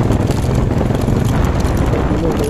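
Motorcycle engine running as the bike rides slowly along, heard from the rider's seat: a steady, dense low pulsing throughout.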